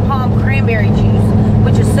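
Road and engine noise inside a moving car's cabin at highway speed, a steady low rumble, with a woman's voice talking over it.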